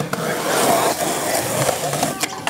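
Skateboard wheels rolling steadily over a concrete skatepark deck.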